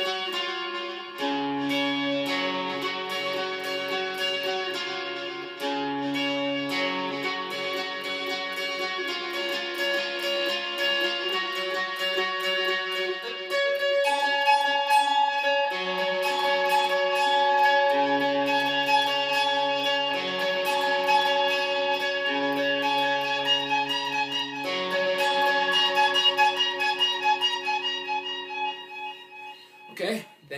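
Electric guitar (a Squier Stratocaster) picked rapidly in ringing chord shapes high on the neck, with the open D and G strings sounding under them. The chords shift every second or two, and the playing gets louder about halfway through.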